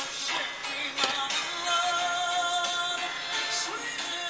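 Electronic background music with processed, synthetic-sounding vocals: held notes with a few pitch slides, one rising near the end.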